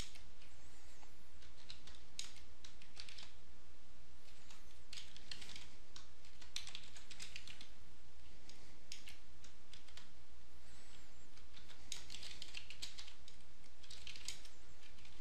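Computer keyboard typing, keystrokes coming in short irregular runs with small pauses between, over a steady low hum.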